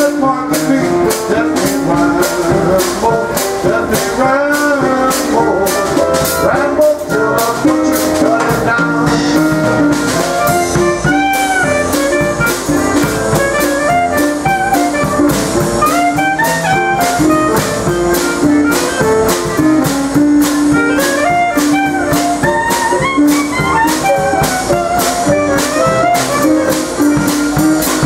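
Live traditional jazz band playing an instrumental chorus: a clarinet carries a wavering melody line over keyboard and a steady drum-kit beat.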